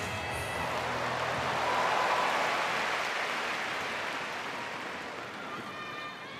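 Arena crowd applause, swelling about two seconds in and then slowly dying away.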